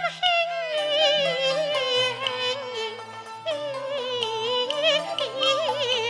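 A woman sings a Cantonese opera song (yueqü) with instrumental accompaniment. She holds a long note with heavy vibrato that slowly falls in pitch. About halfway she starts a new phrase higher and lets it fall again, with a wide wavering vibrato near the end.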